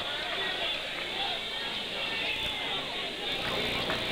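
Steady murmur of many spectators chattering in a school gymnasium.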